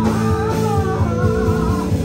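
Live band playing a song, with electric guitar and bass guitar over a steady beat.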